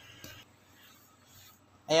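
Faint handling of the plastic drain valve of a twin-tub washing machine as it is worked free, with one light click about a quarter second in.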